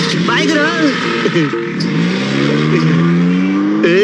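A Mahindra Scorpio SUV's engine revving as it pulls away, its pitch climbing steadily through the second half. Voices shout briefly near the start.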